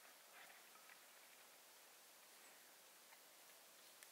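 Near silence: faint hiss with a few faint ticks, a small cluster about half a second in and single ones near the end.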